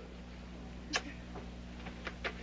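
Quiet steady low hum with faint hiss, broken by one short sharp click a little under a second in and a fainter tick shortly after.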